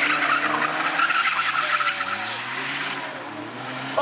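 Car tyres squealing as a car drifts sideways around cones on asphalt, with its engine revving. The sound is loudest in the first two seconds and eases off after that.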